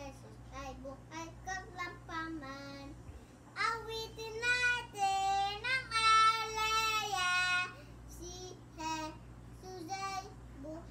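A young boy singing unaccompanied: short, soft phrases at first, then louder held notes from about three and a half to nearly eight seconds in, then quieter phrases again.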